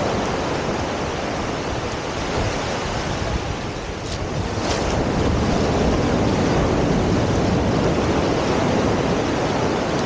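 Ocean surf breaking and washing up the shore, mixed with wind noise on the microphone; the rush dips a little just before halfway and then swells again.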